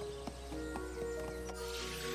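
Quiet background music from the cartoon's score: several held notes with a few light plucked notes.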